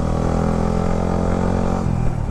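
A sport motorcycle's engine running steadily under way, heard from the rider's seat, with an even note that changes near the end.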